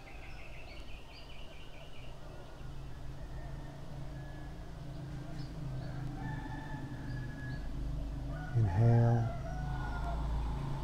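A rooster crowing among other bird calls, with a quick run of high chirps in the first two seconds and a short louder pitched call near the end, over a steady low hum.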